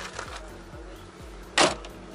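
A car door being shut once, a short loud bang about one and a half seconds in, over background music with a steady beat.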